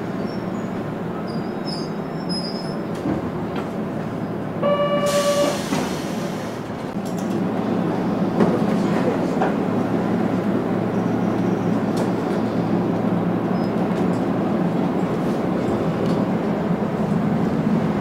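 Cab noise of a Kobe Electric Railway 1100-series electric train pulling away from a station, a steady running sound that grows a little louder from about seven seconds in as the train gets moving. About five seconds in comes a brief pitched tone with a burst of hiss, lasting about a second.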